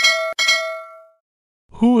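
Notification-bell sound effect: two quick bell dings about half a second apart, ringing out within a second.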